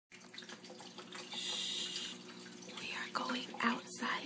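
A woman whispering close to the microphone, with a long hushing hiss about a second and a half in and a sharp hiss just before the end, over a steady low hum.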